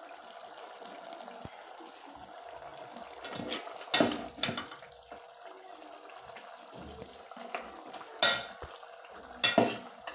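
Metal spoon stirring a thick simmering soup in a metal pot, with several sharp clinks of the spoon against the pot, the loudest about four seconds in and twice near the end, over a steady hiss from the liquid.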